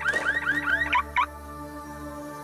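Car alarm sounding a rapid chirping warble, about seven rising chirps a second, cutting off abruptly about a second in.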